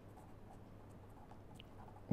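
Near silence: the faint scratch of a felt-tip marker writing on paper, over a low steady hum.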